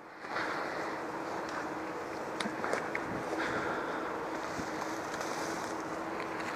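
Steady wind noise on the camera microphone, with a few faint clicks.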